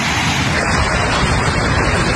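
A multi-storey building collapsing in an earthquake: a loud, steady rushing roar of falling masonry and debris.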